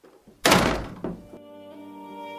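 A door slamming shut about half a second in, a single loud thunk with a short ring and a smaller knock just after. Slow background music with held tones comes in about one and a half seconds in.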